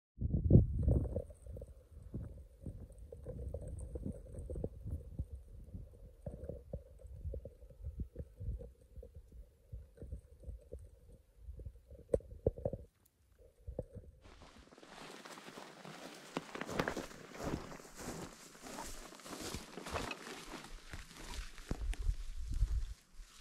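Wind buffeting the microphone in irregular low, rumbling thumps. About fourteen seconds in, after a brief drop, it gives way to a brighter, steady outdoor hiss of wind with small crackling rustles.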